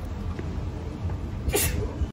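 Steady outdoor street noise with a low rumble. About one and a half seconds in comes a short, sharp burst of breathy noise, the loudest thing here.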